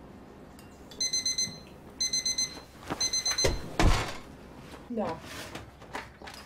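Oven timer on an electric range beeping: three quick bursts of rapid high beeps about a second apart, the alert that the food is done. A low thump follows just after the third burst, and a short voice sound comes near the end.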